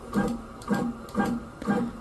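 Creality K1 Max 3D printer's Z-axis stepper motors jogging the bed in short moves: four brief whirs about half a second apart, each at a steady pitch.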